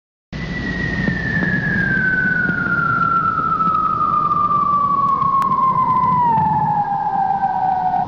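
A falling-bomb whistle sound effect: one long whistle gliding steadily down in pitch over about seven and a half seconds, with a low rumble underneath, leading into an explosion just after.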